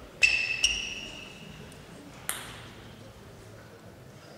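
Table tennis ball bouncing: two ringing pings in quick succession near the start, then a single sharper click about two seconds later.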